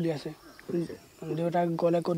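Speech only: a young man talking in short phrases with brief pauses.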